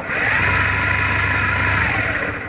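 Brushless motor of a DIY electric skateboard spinning the drive wheel freely through its belt drive, off the ground, at the press of the remote's trigger. It starts suddenly, runs loud and steady, and begins to wind down near the end.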